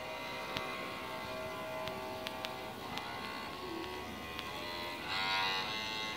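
Electric cello bowed in slow, sustained single notes, the pitch stepping to a new note every second or so and growing louder about five seconds in.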